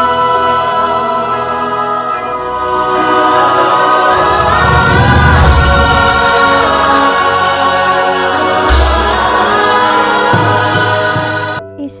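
Choral music with sustained singing voices over a full accompaniment, swelling in the middle with deep low booms, then cutting off abruptly near the end.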